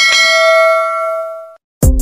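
A bell-chime 'ding' sound effect, struck once and ringing out as it fades over about a second and a half, marking a click on a notification bell icon. Music with a beat starts just before the end.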